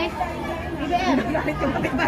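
Indistinct chatter: several voices talking over one another, with no other distinct sound standing out.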